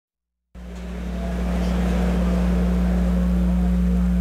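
A steady low hum fades in about half a second in, over a faint hiss of open-air venue noise.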